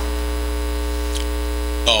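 Steady low electrical mains hum in the audio feed, with a man's voice starting just at the end.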